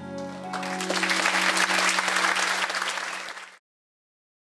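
The last chord of an acoustic guitar and violins rings on as audience applause breaks in about half a second in and swells to loud clapping. The sound cuts off abruptly shortly before the end.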